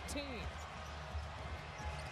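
A basketball being dribbled on the hardwood court, its bounces heard over the steady murmur of an arena crowd.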